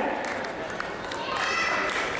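Audience applause, a dense patter of clapping, with voices over it; a voice speaks up over the clapping about a second and a half in.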